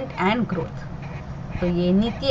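A woman's voice without clear words: a brief voiced sound just after the start, then after about a second of pause, a drawn-out vowel held at a level pitch near the end, the sound of a lecturer hesitating mid-sentence.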